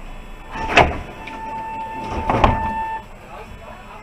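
Mercedes-Benz Citaro G articulated bus braking to a near stop. Two sharp air hisses come about a second and a half apart, with a steady high tone between them that stops about three seconds in.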